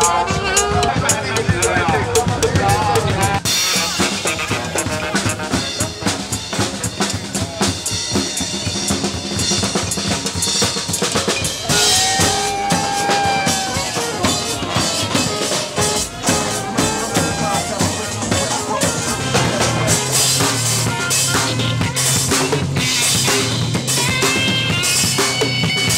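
Drum kit played live in a fast, dense groove of snare and bass drum hits with cymbals, with a second percussionist playing alongside.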